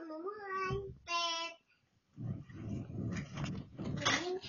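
A young girl's voice: a short spoken or sung phrase, then a brief high held note about a second in, followed by about two seconds of muffled movement noise with small knocks.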